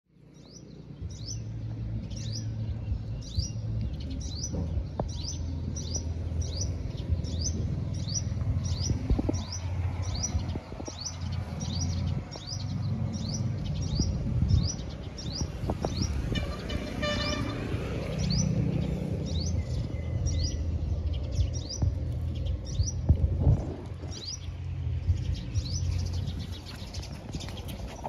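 A bird repeating a short, high, downward-sliding chirp about twice a second, over a steady low rumble with a few sharp knocks. The chirping pauses briefly past the middle, where a pitched sound with several overtones comes in.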